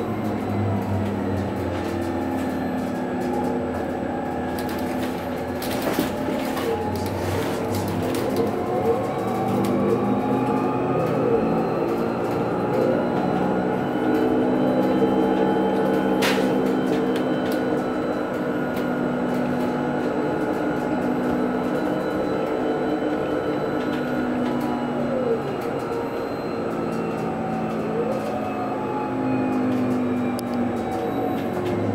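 Inside the cabin of a Proterra ZX5 battery-electric bus on the move: the electric drive's whine, several tones rising and falling with road speed, over road and body noise. A few sharp knocks come about six to eight seconds in and once near the middle.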